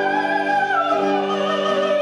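Live band music on harmonium, guitar, tuba, flute and voices: a high melody line with vibrato over steadily held chords, the melody falling lower about a second in.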